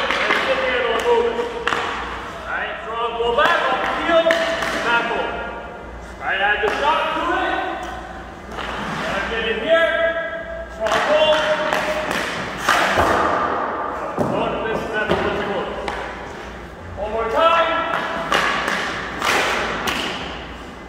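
A man talking, with a hockey stick blade knocking a puck on ice several times between his words.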